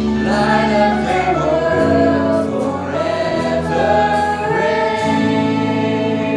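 Live worship music: women's voices singing a worship song together, with band accompaniment underneath.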